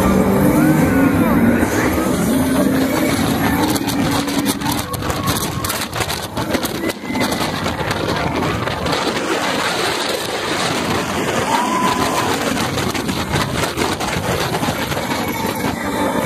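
TRON Lightcycle Run roller coaster train launching out of its tunnel and running at speed: a loud, continuous rush of wind and track noise, with heavy wind buffeting on the smart glasses' microphone.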